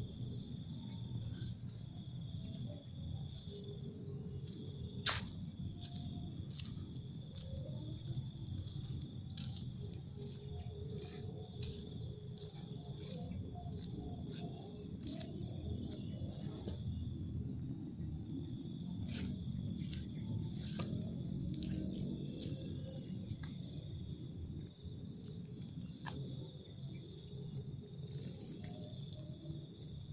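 Insects chirring in a steady high-pitched trill, pulsing in stretches, over a low steady outdoor rumble. Short scattered chirps and clicks break through.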